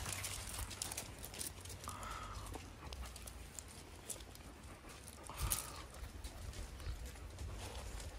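Shiba Inu dogs moving close by on gravel, with scattered small clicks and scuffs. Two short calls come about two and five and a half seconds in.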